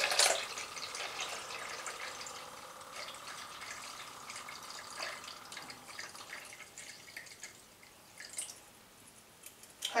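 Vinegar pouring in a thin stream from a bottle's pour spout into a plastic measuring jug, trickling and fading gradually into faint drips near the end.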